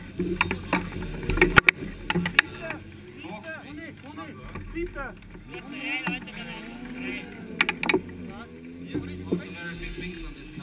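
Sharp clicks and knocks from a driver change in a Formula Student race car: seat-harness buckles being handled and a driver bumping against the cockpit, with voices talking through the middle and a faint steady hum underneath.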